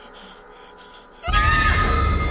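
Faint background hush, then about a second and a quarter in a sudden loud film sound-effect hit with music and a shrill, gliding cry that carries on to the end.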